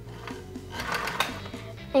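An old Kenmore sewing machine, over 20 years old, running for about a second in the middle with a fast run of needle strokes. Soft background music with a repeating bass line plays underneath.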